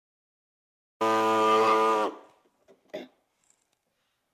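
Handheld pneumatic cutting tool running at one steady pitch for about a second, cutting the plastic front body panel of a golf cart, then shutting off and dying away; a faint knock follows about a second later.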